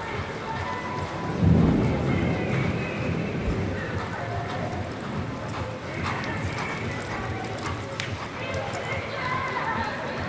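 A reining horse's hooves loping on the arena's sand footing, under background music and voices. A low thump about a second and a half in is the loudest sound.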